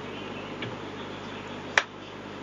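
Computer keyboard keystrokes: a couple of faint taps, then one sharp, loud key click near the end, over a steady background hiss.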